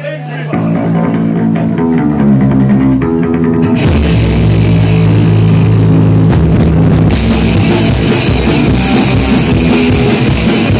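Live rock band in a small club, heard loud through a phone microphone: an electric guitar plays a riff alone for the first few seconds, then about four seconds in the drums and bass guitar come in and the full band plays on.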